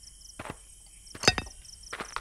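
Small metal clicks and taps as a hitch pin is fitted into the coupling of a handmade miniature tractor: a few light clicks, with a sharper double click a little past halfway.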